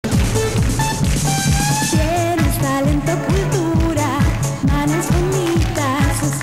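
A girl singing a pop song live into a handheld microphone over a backing track with a steady kick drum and bass line; her voice comes in about a second in, with vibrato on the held notes.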